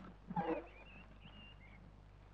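A short animal call about half a second in, followed by faint, thin, wavering high chirps.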